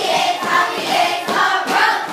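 A class of young children singing together as a group, many voices at once.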